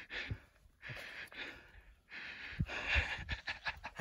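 A man breathing hard: a run of quick, hissy breaths in and out, roughly one a second, with short pauses between.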